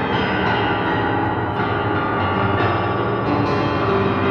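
Upright piano played with both hands in an improvised passage, dense chords whose notes ring on and overlap without a break.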